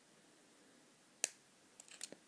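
Near silence broken by one sharp click about a second and a quarter in, with a few faint ticks near the end, from a pick and tension bar working the pins of a brass euro-profile cylinder lock.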